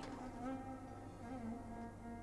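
Soft background music of bowed strings holding long, slowly moving notes under a pause in the dialogue.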